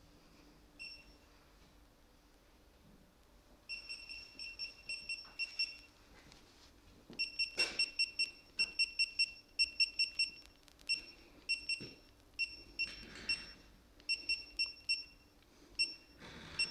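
Digital torque wrench beeping at each button press as its torque setting is stepped down: runs of rapid short, high beeps, several a second, with short pauses between runs and a couple of handling clicks.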